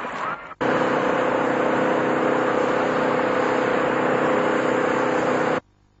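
An engine or motor running steadily, a continuous mechanical noise with a steady low hum. It starts abruptly about half a second in and cuts off abruptly just before the end.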